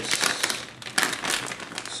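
Thin plastic packaging bag crinkling as hands unwrap an SLI bridge from it, in two spells of crackling: one at the start and one about a second in.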